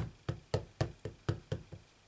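A clear acrylic stamp block tapped repeatedly onto a Memento black ink pad to ink the stamp: about eight quick knocks, roughly four a second, the first the loudest, stopping shortly before the end.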